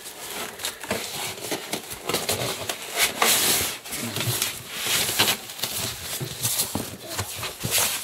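Cardboard box and bubble wrap being handled: irregular rustling, scraping and crinkling as the flaps are pulled and the packing is moved, loudest about three seconds in and again around five seconds.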